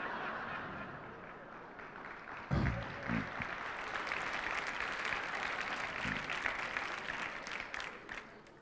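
Live theatre audience applauding a joke's punchline, the clapping growing fuller from about four seconds in, with a short burst of a voice around three seconds in.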